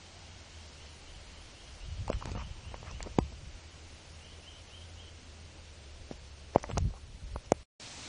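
Low rumble of wind and handling on a small camera microphone, with a few sharp clicks and knocks as the camera is moved about, the loudest about three seconds in and in a cluster near the end.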